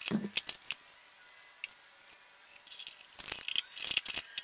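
Brass valve and fittings on a steel pressure-pot lid being handled: sharp metal clicks and rattles in the first second, then a single click, then another cluster of clicks near the end, with a quiet gap between.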